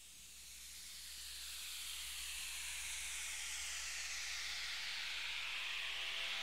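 A swelling whoosh of synthesized noise, like wind or surf, opening a 1980s Mandarin pop song. It grows steadily louder while its pitch slowly sweeps downward.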